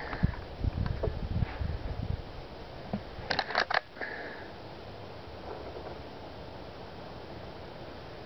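Low handling thumps and rustle, then a quick cluster of about four sharp clicks about three and a half seconds in: a break-barrel spring-piston air rifle being handled and cocked for the next shot.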